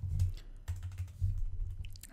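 Computer keyboard keys being pressed, a short run of uneven keystrokes as text is deleted and new lines are added in a code editor.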